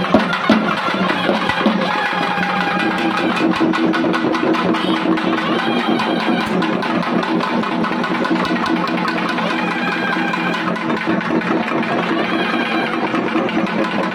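Festival drum ensemble of double-headed barrel drums played with sticks, in fast continuous strokes, with a steady droning tone held from a few seconds in until near the end.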